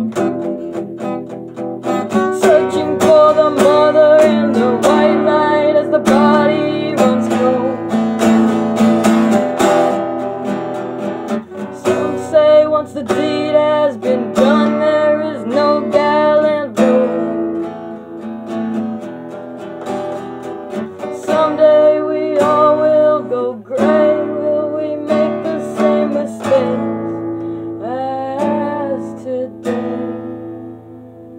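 Acoustic guitar played in a song, strummed and picked chords ringing on through a steady rhythm.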